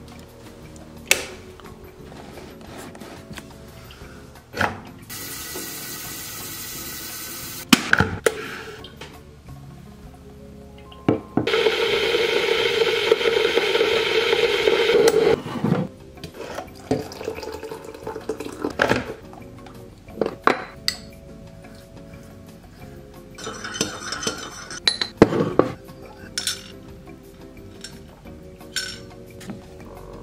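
Kitchen clatter of making tea: clicks and clinks of a ceramic mug and metal utensils, and a few seconds of steady water-like hiss. About halfway through comes the loudest sound, some four seconds of water pouring from a stainless electric kettle. Faint background music runs underneath.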